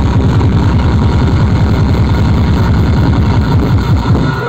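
Loud, distorted bass from a procession DJ sound system: a fast run of deep thuds, with little melody above it.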